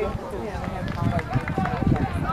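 Several people's voices talking and calling out at once, overlapping and indistinct, over outdoor background noise.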